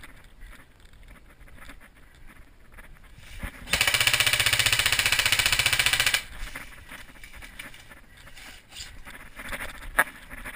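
An airsoft electric gun firing one long full-auto burst of about two and a half seconds, starting near the middle, close to the microphone, with quiet footsteps and scuffing on debris around it.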